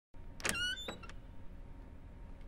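A sharp click followed at once by a brief squeaky whine, then two fainter clicks, over a low steady hum, like a small mechanism being worked.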